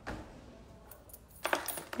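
A few light metallic clicks and a short jingle, clustered about one and a half seconds in, in an otherwise quiet stretch.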